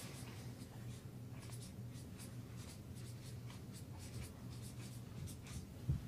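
Faint scratching of a pen writing on paper, in scattered short strokes, over a steady low room hum.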